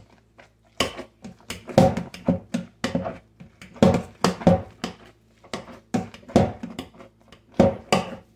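Wire potato masher pushed down again and again into boiled potatoes in a stainless steel pot. It makes about a dozen irregular strokes, one or two a second, each a thud with a short ring.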